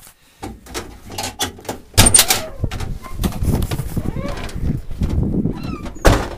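A vehicle door clicks and knocks open about two seconds in, followed by irregular footsteps crunching on dirt and gravel mixed with rustling from the handheld camera.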